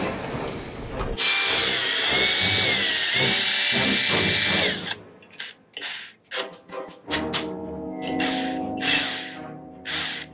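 A cordless drill runs loudly with a high whine for about three and a half seconds, then cuts off suddenly. Short stuttering bursts follow as the drill jams.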